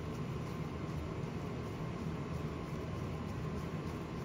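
Steady, even background hiss of room noise, like ventilation, with no distinct clicks or knocks.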